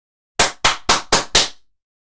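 An edited-in sound effect of five sharp bangs in quick succession, about four a second, each dying away quickly.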